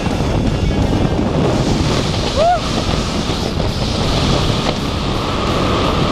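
Wind rushing over the camera microphone under an open tandem skydiving parachute, with a short vocal whoop about two and a half seconds in.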